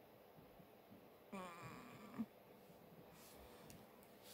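Near silence: room tone, with a short, faint voice-like sound about a second and a half in.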